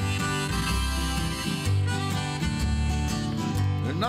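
Instrumental break of an acoustic band song: harmonica in a neck rack playing sustained chords over strummed acoustic guitar and plucked upright bass. The bass notes land on a steady, even beat.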